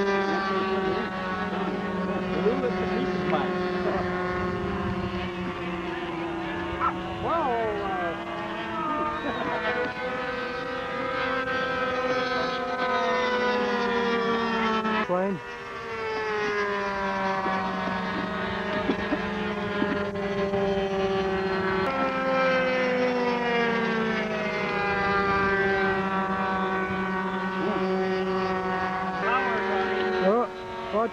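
Radio-control model airplane's small glow engine running in flight, a steady high drone whose pitch slides gradually down and jumps back up a few times as the plane flies its passes, with a brief dip about halfway through.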